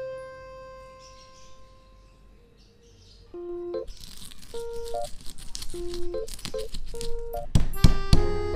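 Stone pestle crushing bird's-eye chillies, shallots and garlic with salt in a stone mortar: rough crunching and grinding from about four seconds in, with a few heavier thumps near the end. Background music plays throughout.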